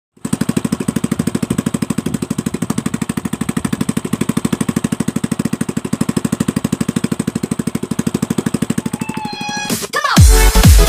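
Honda Karisma's single-cylinder four-stroke engine running at a steady idle, about eleven firing pulses a second. It stops just before the end, when music comes in.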